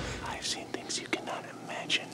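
A man's faint whispering, breathy and broken.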